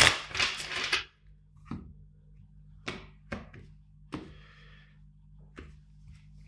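A tarot deck being shuffled by hand, a rattling rustle of cards lasting about a second, followed by several separate sharp taps and one short slide as the cards are handled and set down on a wooden tabletop.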